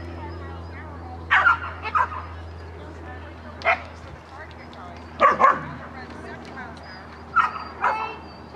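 A dog barking in short, sharp barks, about seven at irregular intervals, over a steady low hum.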